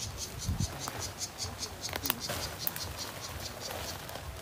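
Insects chirping in a steady, even rhythm of about four to five high pulses a second, with a faint knock or two beneath.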